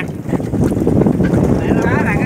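Fishing boat's engine running with a steady low rumble, wind buffeting the microphone; a man's voice starts near the end.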